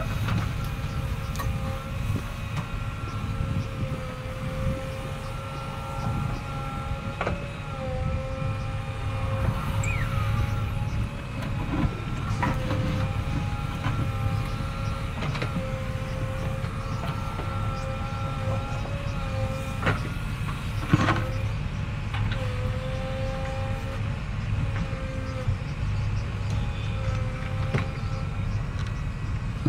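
JCB 3DX backhoe loader's diesel engine running under working load as the backhoe digs and the machine moves, with a steady whine that wavers slightly in pitch. A few sharp metallic clanks come through, the loudest about 21 seconds in.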